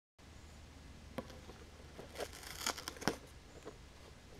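A few light clicks and knocks with a brief crinkly rustle between them, over a low steady hum.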